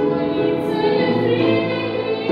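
A woman singing a Christian psalm into a microphone over instrumental accompaniment, the melody moving from note to note with a brief hissing consonant about half a second in.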